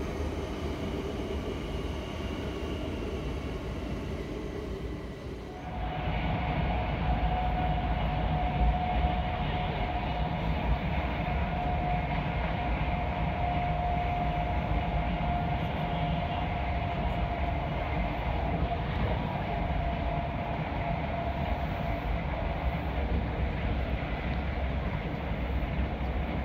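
An electric commuter train passing over a bridge, a steady running sound; about six seconds in it changes abruptly to the deeper steady rumble heard inside a moving train, with a steady whine in it for about ten seconds.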